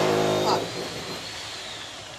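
A loud droning buzz cuts off about half a second in. It leaves a kitchen appliance fan running with a steady hiss and a faint high whine under it.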